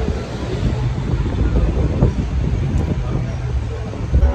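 Wind buffeting the microphone as a low, uneven rumble over outdoor street noise, with a voice faintly in it.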